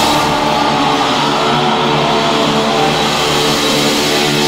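Live heavy metal band with electric guitars holding a sustained, ringing chord while the drums are silent.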